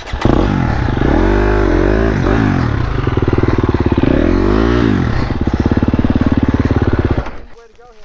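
Dirt bike engine revved hard in two rising-and-falling surges, then held at high revs before cutting out about seven seconds in.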